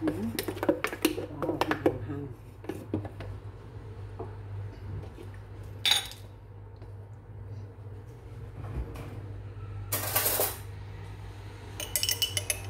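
A metal spoon clinking and knocking against kitchen dishes and a blender jar: a quick run of clinks in the first two seconds, one sharp clink about six seconds in, and a short scraping rustle about ten seconds in. A steady low hum runs underneath.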